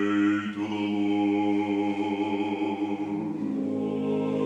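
Orthodox liturgical chant sung a cappella: voices holding long, slow notes, moving to a new pitch near the end.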